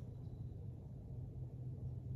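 Quiet background with a faint, steady low hum and no distinct sound events.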